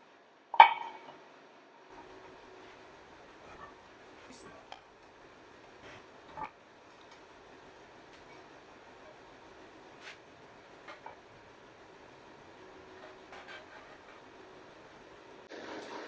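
Metallic clinks and knocks of an alloy wheel being fitted onto the hub and its lug nuts threaded on by hand, with one sharper clank about half a second in and scattered lighter clicks after it.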